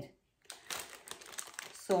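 Thin plastic bag crinkling and rustling as a bagged pack of plastic plant-watering spikes is picked up and handled, starting about half a second in.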